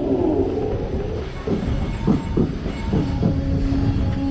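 Break Dance funfair ride in motion, heard from one of its spinning cars: a heavy, steady low rumble with a quick run of rattling knocks in the second half.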